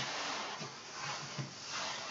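Faint handling noise: soft rubbing and rustling as hands press and lift the plastic cyclone parts of a Dyson V11 vacuum cleaner, swelling slightly a couple of times.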